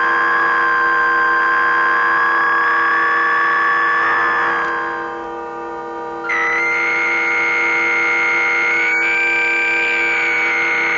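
Electronic music of steady held drone tones, played live by a performer with hand-held controllers. A brighter, higher tone on top fades out about four to five seconds in. A new, higher one cuts in suddenly about six seconds in and bends slightly up near the end.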